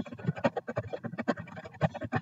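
Rapid typing on a computer keyboard, a quick uneven run of key clicks at roughly eight keystrokes a second.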